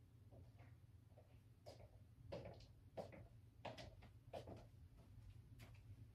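Near silence: faint footsteps, about one every two-thirds of a second, over a low steady room hum.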